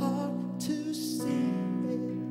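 Church worship music: a sung melody over sustained instrumental chords.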